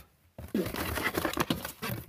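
Crinkling and rustling of packaging as the parts of a solar light are taken out of their cardboard box. It starts after a moment of dead silence and cuts off abruptly just before the end.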